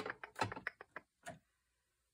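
Irregular run of quick plastic clicks and rattles from a Walnut Stain ink pad being worked free and picked up. The clicks stop about a second and a half in.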